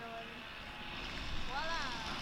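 Low, steady rumble of wind and handling noise on a handheld camera's microphone as the camera swings round outdoors. A short voiced sound, rising then falling in pitch, comes near the end.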